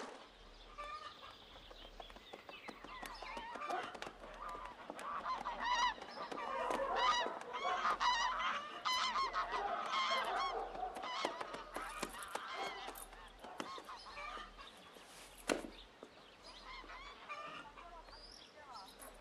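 A flock of domestic geese honking, many short calls overlapping, thickest in the middle and thinning toward the end.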